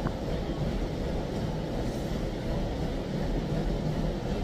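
Steady low rumble and hiss of gym room noise, with a faint click at the very start.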